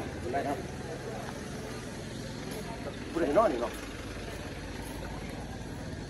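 Isuzu truck's diesel engine running steadily with a low hum.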